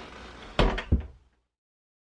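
A wooden interior door being shut: two loud knocks about a third of a second apart, a little past half a second in, then the sound cuts off abruptly.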